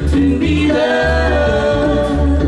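Live acoustic band playing a reggae song: held, wordless vocal harmonies over an upright bass line and mandolin, with a brief dip in level at the very start.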